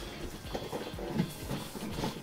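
Quiet background music, with a few light knocks and scuffs from a cardboard box of figures being carried and set down.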